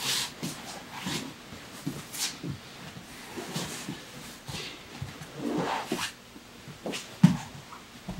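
Gi fabric rustling, with scuffs and shuffles of bodies and bare feet on a foam grappling mat as two grapplers break apart and reset their position. A single sharp thump on the mat comes about seven seconds in.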